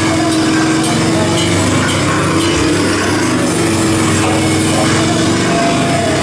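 A heavy band playing live at full volume: held, heavily distorted guitar chords over drums and cymbals, with no break.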